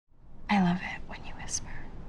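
A woman's voice: a brief voiced sound about half a second in, then soft whispering with a sharp hissed 's' about a second and a half in.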